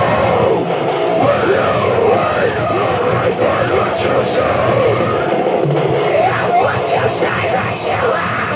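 Deathcore song playing loud and dense, with a man's harsh screamed vocals performed over it into a handheld microphone.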